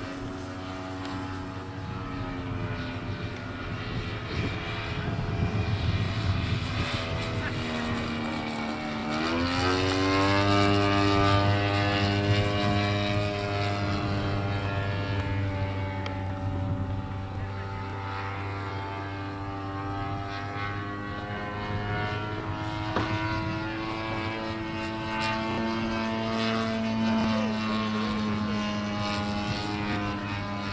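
Engine and propeller of a large radio-controlled P-39 Airacobra scale model in flight, a steady drone whose pitch dips and then climbs sharply about nine seconds in, where it is loudest. After that the pitch swings slowly as the model flies its passes.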